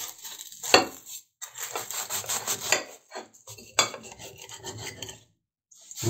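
A large kitchen knife sawing through the crisp fried crust of a lángos, rasping in a series of short strokes. A few sharp clicks come about a second in and near four seconds.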